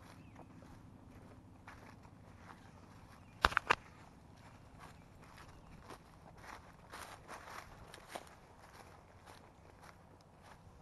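Footsteps walking through brush outdoors, soft irregular crackles underfoot. Three sharp cracks come close together about three and a half seconds in, and a busier patch of crackling follows a few seconds later.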